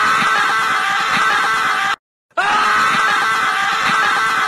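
A loud, harsh jumpscare scream sound effect. It cuts off abruptly about two seconds in, then repeats identically after a brief silence.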